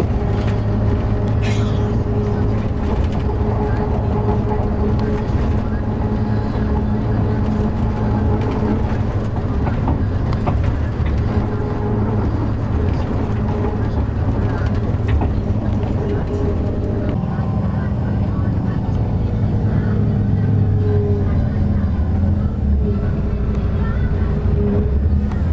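Engine of a moving road vehicle droning steadily, heard from inside the cabin, with people talking over it. The engine note shifts slightly about two-thirds of the way through.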